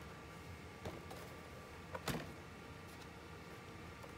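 Handling knocks of a plastic laptop case as it is tipped over and set down on a work mat: a light knock about a second in and a firmer one about two seconds in, over quiet room tone.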